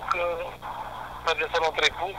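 A man speaking over a telephone line. His voice sounds thin, with nothing above the phone's narrow band, and there is a short pause midway.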